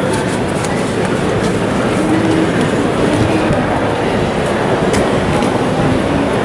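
Steady, loud din of a busy market hall: a continuous low rumble with faint, indistinct voices mixed in.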